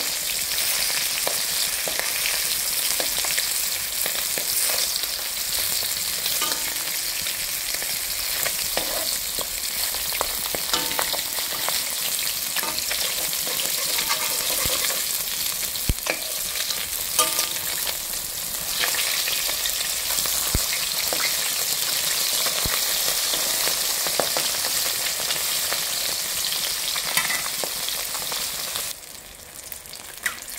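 Fish pieces sizzling in hot oil in a metal wok, with a steel spatula clicking and scraping against the pan now and then as they are turned. The sizzle drops briefly near the end.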